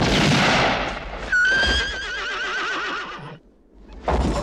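A horse whinnying: one long, wavering neigh that starts suddenly about a second in and lasts about two seconds.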